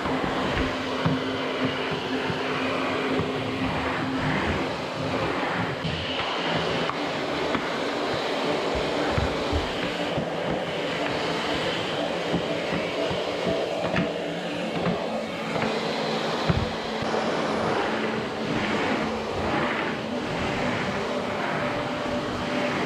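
Canister vacuum cleaner running steadily as its floor head is pushed back and forth over a wooden floor, with a few low knocks along the way.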